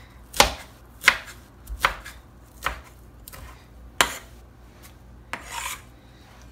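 A kitchen knife chopping parsley on a cutting board: five sharp chops under a second apart, then a longer, rougher stroke near the end.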